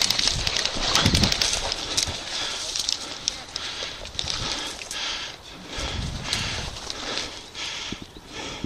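Footsteps and dry brush rustling against clothing and gear as a person walks through tall dead grass and shrubs, in an even walking rhythm of about two to three steps a second.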